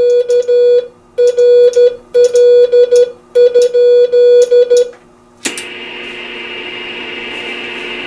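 Morse code from a Heathkit DX-60A transmitter, keyed with an electronic keyer and Vibroplex paddle, heard as a steady beep switched on and off in four quick groups: a query asking whether the frequency is in use. About five and a half seconds in, a click is followed by a steady static hiss as the National NC-173 receiver comes back up on receive.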